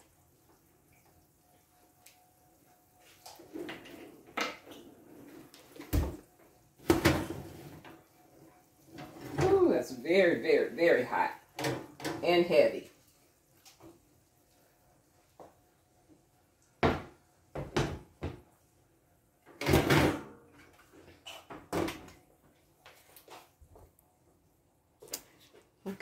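Oven door, oven rack and a cast-iron skillet knocking and clanking as the skillet is lifted out of the oven and set down on a glass cooktop: a string of separate knocks. A brief stretch of unclear voice comes in the middle.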